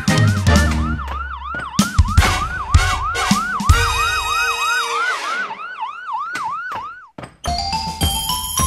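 Ambulance siren sound effect rising and falling quickly, about three sweeps a second, over the closing bars of upbeat music. The siren fades out and stops about a second before the end.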